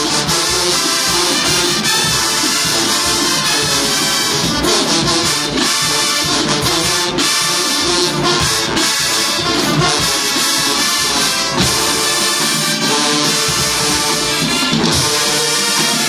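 Marching band playing loud, continuous music: brass over drums.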